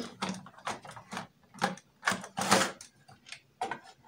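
Plastic extension socket box being taken apart by hand: a string of irregular clicks and knocks as its plastic housing and parts come apart and are set down.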